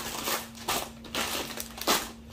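Plastic bags of dry beans crinkling as they are handled and set down on a table, in several bursts.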